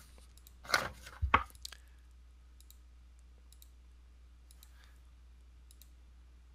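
Computer mouse clicking: two louder clicks about a second in, then a scattering of faint light clicks. A steady low hum sits underneath.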